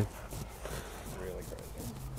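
Faint distant voices over a quiet outdoor background, with two short murmurs about a second apart.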